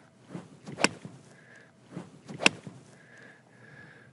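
Crisp click of an iron clubface striking a golf ball off turf, heard twice about a second and a half apart, the second louder.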